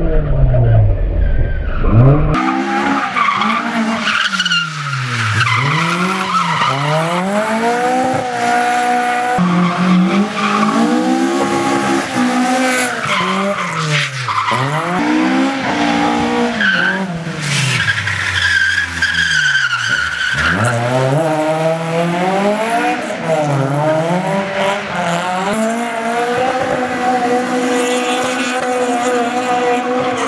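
An AE86 Trueno's naturally aspirated 20-valve 4A-GE four-cylinder revving hard and dropping back, over and over, as the car drifts, with tyres squealing on the damp road. It is heard from inside the cabin for the first couple of seconds, then from the roadside.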